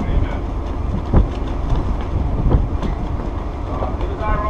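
Steady low rumble of a ship under way, with wind buffeting the microphone on the open deck and a couple of short thumps about one and two and a half seconds in.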